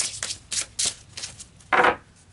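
An oracle card deck being shuffled in the hands: a run of quick card flicks, then one louder card sound near the end as a card is drawn from the deck.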